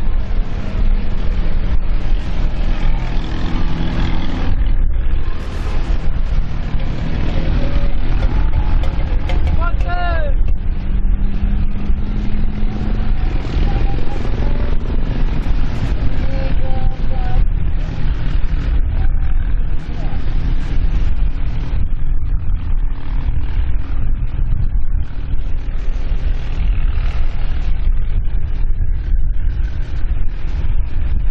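Steady wind rumble on the microphone, with voices of people on the shore and the engines of small racing boats out on the water.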